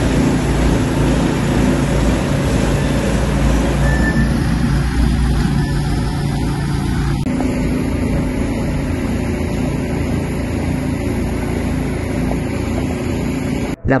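An engine running steadily, with a low hum and a hiss over it, most likely the motor pump that feeds the spray hoses. The sound shifts abruptly about seven seconds in.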